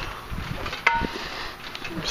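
Low outdoor background noise with a single sharp click, a little under a second in, that rings briefly.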